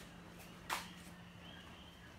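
A single sharp click about three-quarters of a second in, over a faint steady low hum and faint high chirps.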